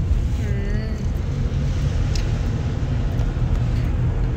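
Road and engine noise inside a moving car's cabin, a steady low rumble. A short voice sound comes about half a second in.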